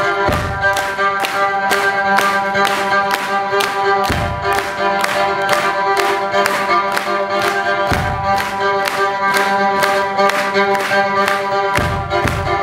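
Amplified fiddle played live with hard, driving bow strokes. The strokes come in an even rhythm of about three a second over a held drone, with a low thud roughly every four seconds.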